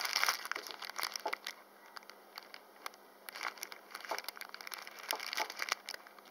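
Clear plastic bag wrapped around a fossil rock crinkling as it is turned over in the hands: a dense run of crackles in the first second and a half, then scattered crinkles.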